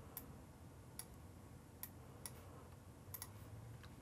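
Near silence with about six faint, scattered clicks of a computer mouse.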